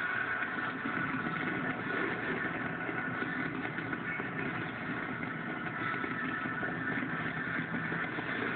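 Television broadcast sound of a large fireworks display with crowd noise: a steady, dense din played through a TV speaker and picked up by a phone, thin and dull in tone.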